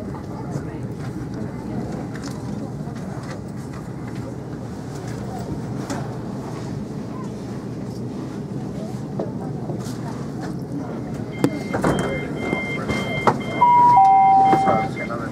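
Steady rumble of a moving passenger train heard from inside the carriage, with a freight train's container wagons passing close alongside and knocking and clattering louder near the end. Toward the end, a run of high electronic beeps, then the first note of the on-board announcement chime.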